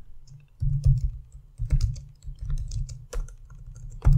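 Computer keyboard typing: a run of irregular keystrokes starting about half a second in.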